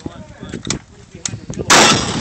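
A single rifle shot, sudden and loud, near the end.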